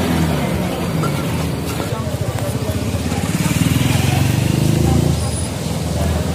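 A motor vehicle engine running close by, with a rapid low pulsing that grows louder from about two seconds in and drops away just after five seconds. Street voices run underneath.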